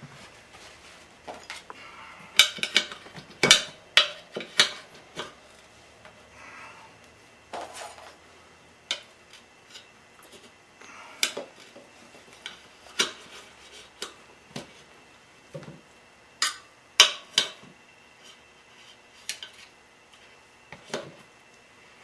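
Metal tyre irons clinking and knocking against each other and the motorcycle wheel's rim while the tyre's second bead is levered on: irregular sharp metallic clicks, with the loudest clusters a few seconds in and again about two-thirds of the way through.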